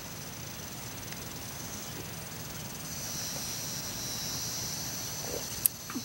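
Steady, high-pitched drone of insects, swelling slightly about halfway through, with a faint click near the end.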